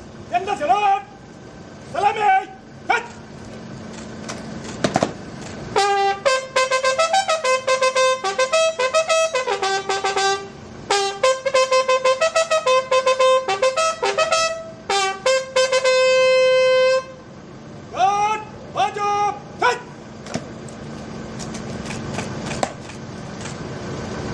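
A bugle sounds a salute call for a police guard of honour: a run of quick repeated notes lasting about ten seconds, ending on a long held note. Short shouted drill commands come before and after it.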